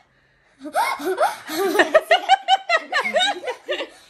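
Laughter: a person laughing hard in a long run of quick, repeated ha-ha pulses, starting about half a second in after a brief hush.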